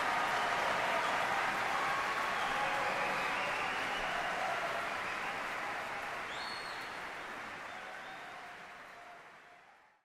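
Large audience applauding and cheering after a choral performance, with a brief high whistle about six seconds in. The applause fades out gradually over the second half.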